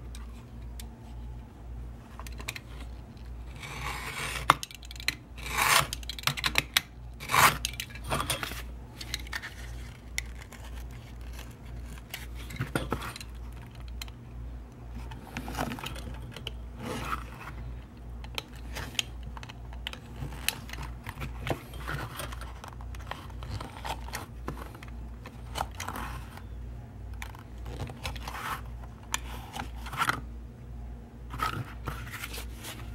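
Snap-off utility knife slicing through wet-formed leather on a plastic cutting board: irregular scraping cuts, loudest about four to eight seconds in, with small handling knocks in between.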